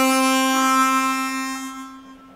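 Chromatic harmonica holding one long, steady note that fades out toward the end.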